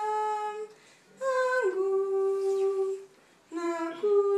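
A young woman's solo voice singing unaccompanied into a microphone, in long held notes that step in pitch. The phrases are separated by short pauses.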